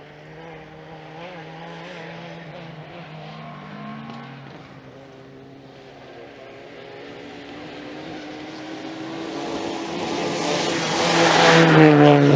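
Historic rally car's engine approaching on a gravel special stage, rising and falling in pitch as it is driven hard through the gears, growing steadily louder until the car arrives near the end.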